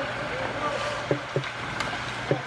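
Hockey skates scraping and carving on ice in a rink, with two sharp clacks of pucks off sticks about a second in, ringing briefly in the arena.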